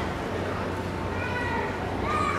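A high voice calling out in long, drawn-out notes over the steady background hum of a ballpark.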